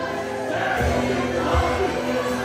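A live gospel worship band playing, with several voices singing together over a drum beat.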